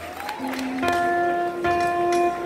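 A saxophone starts playing, holding long single notes that set in about a second in, after a short upward slide.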